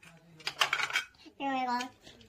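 Pieces of a plastic toy food-cutting set clacking and rattling together for about half a second, followed by a young child's short vocal sound held at one steady pitch.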